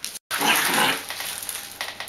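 Bichon Frisé puppies growling and grunting in play, loudest for about a second early on, then quieter.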